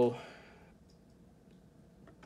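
A man's voice ends a word, then a quiet room with a few faint, short clicks.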